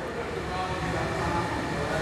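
A pause in a man's speech: steady low background rumble and hiss, with faint indistinct voice sounds.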